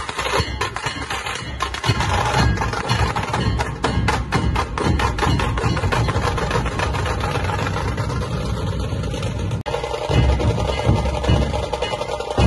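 Several tasha kettle drums played together with thin sticks in fast, sharp rolls. After a brief break near the end, the deep beat of large dhol barrel drums comes in strongly under the tashas.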